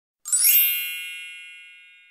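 A single bright ding, a chime-like sound effect, struck about a quarter second in, ringing with several high tones and slowly fading away.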